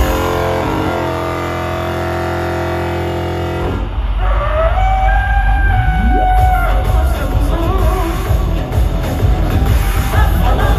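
Synth-pop band playing live through a PA in an instrumental passage: a held synthesizer chord for the first few seconds, then the low beat comes back in with gliding, held synth tones over it.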